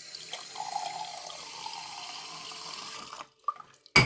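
Tap water running into a drinking glass held under a bathroom faucet, stopping about three seconds in. A few small clicks follow, and right at the end a sharp crash as the glass shatters in the sink.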